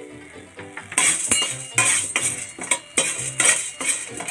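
Metal slotted spoon scraping and clinking against a nonstick kadai as chana dal is stirred, in repeated strokes starting about a second in. Background music plays throughout.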